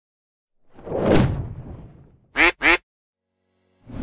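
Logo sound effect: a whoosh that swells and fades in the first two seconds, then two short cartoon duck quacks in quick succession. Another whoosh starts just before the end.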